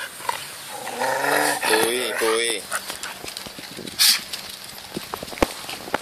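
A man calling a dog by name, “Puy, puy”, in a drawn-out voice. About four seconds in comes a single short, sharp noisy sound, followed by a few light clicks and taps.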